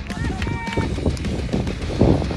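Short shouted calls from players and spectators at a soccer game, a few in the first second, over a steady low rumble of outdoor noise that grows loudest near the end.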